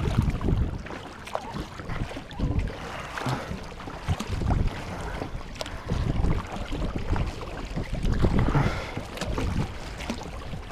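Kayak paddle strokes dipping and splashing through choppy lake water, with wind rumbling on the microphone in irregular gusts.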